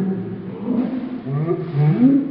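Young women groaning in disgust and laughing, reacting to a foul-tasting Bean Boozled jelly bean.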